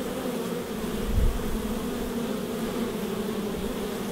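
Honey bees buzzing at a hive entrance: a steady, even hum from many wings. There is a brief low bump about a second in.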